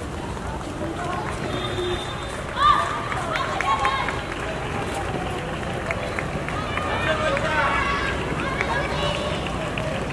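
Women's voices calling out during a field hockey game over a steady outdoor hiss. The loudest call comes about two and a half seconds in, with more calls from about seven seconds on.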